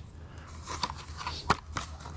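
Stiff clear plastic blister packaging crackling and clicking as it is handled, with one sharper click about one and a half seconds in.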